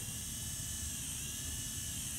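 Motorized FUE punch handpiece running with a steady high-pitched whine while it cuts out hair grafts, its pitch dipping briefly about halfway through.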